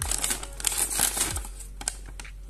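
Paper instruction leaflet rustling and crinkling in irregular bursts as it is handled and its pages are turned, busiest in the first half.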